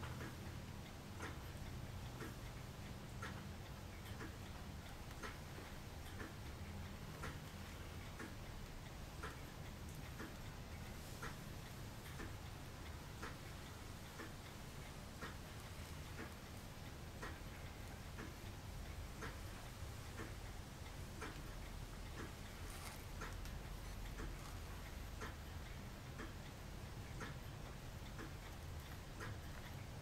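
Faint, steady ticking about once a second over a low room hum.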